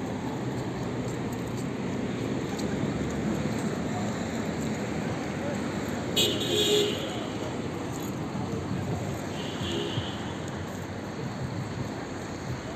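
City street ambience: a steady hum of traffic on the road alongside, with indistinct voices of people nearby. A brief, louder, higher-pitched sound cuts in about six seconds in, and a fainter one comes near ten seconds.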